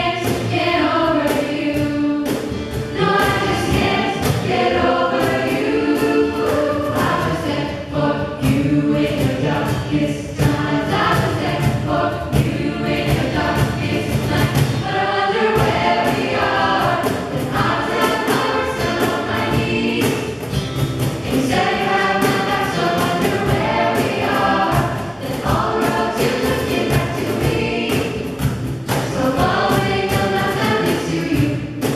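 Jazz choir of mixed male and female voices singing into handheld microphones, several parts moving in harmony over a steady beat.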